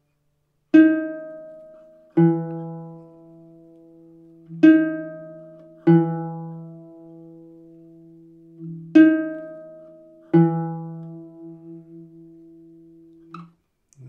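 A plucked string instrument plays a descending major seventh, D♯ down to E, three times. Each high note is followed about a second and a half later by the low note, and both ring and fade.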